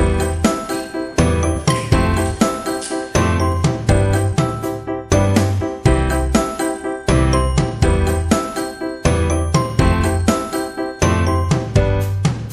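Background music: a tune of quick, bright ringing notes over a steady repeating bass line.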